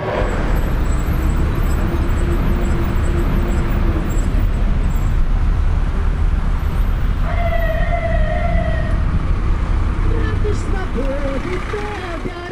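Steady low rumble of city traffic, with a short held horn-like tone about seven seconds in.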